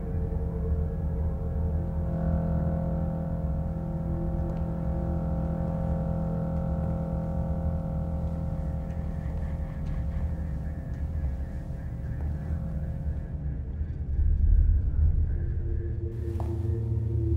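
Dark, droning horror-film score: sustained tones over a deep low rumble, swelling louder near the end.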